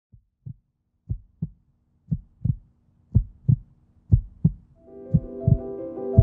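Heartbeat sound effect: a low double thump about once a second, growing louder. Music with sustained chords fades in under it near the end.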